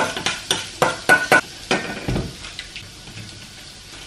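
Kitchenware being handled on a countertop: a quick run of clicks and knocks in the first two seconds, two of them with a short metallic ring, then quieter handling.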